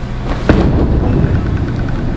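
Bowling ball landing on the lane with a sharp thud about half a second in, then rolling down the wooden lane with a low, steady rumble.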